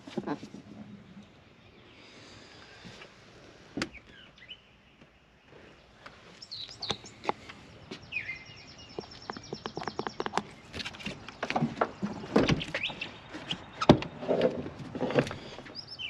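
Faint bird chirps and twitters in the background, joined in the second half by a quick run of clicks and knocks from handling around the car's open door and interior, the loudest knock a couple of seconds before the end.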